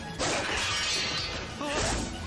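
A sudden crash about a quarter second in that fades away over about a second, followed by a brief voice near the end, all from a television fight scene's soundtrack.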